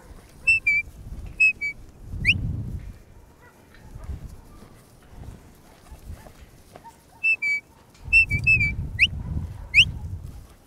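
A handler's whistle commands to a working cattle dog: short two-note falling whistles followed by a quick rising whistle. They come in two bursts, one near the start and one in the last few seconds. A low rumble sits under each burst.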